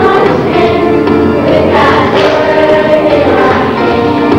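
A group of children singing a song together with musical accompaniment.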